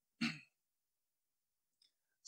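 A man's brief voiced sigh, a short pitched exhale lasting about a quarter second just after the start, followed by dead silence.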